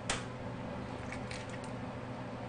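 An egg cracked on the rim of a stainless steel mixing bowl: one sharp tap just after the start, then a few faint clicks of the shell being pulled apart about a second in. A steady low hum of kitchen equipment runs underneath.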